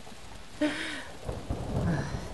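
Steady rain, with a low roll of thunder starting about halfway through.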